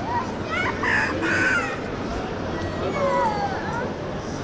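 Crowd murmur from visitors in a large hall, with two high calls that rise and fall in pitch: one about half a second in, lasting about a second, and another about three seconds in.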